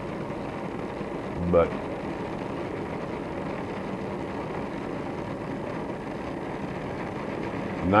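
Oxy-acetylene torch burning steadily with a slightly carbonizing flame (a touch of excess acetylene), giving an even, continuous hiss.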